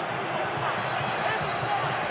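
Football stadium crowd noise: a steady din from the stands with no clear single voice.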